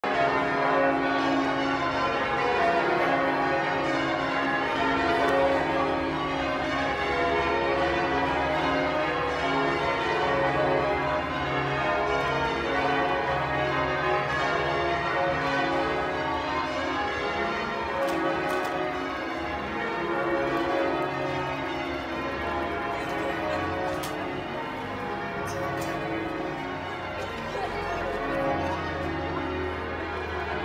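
Church bells rung in changes: several bells struck one after another in a shifting order, forming a continuous peal.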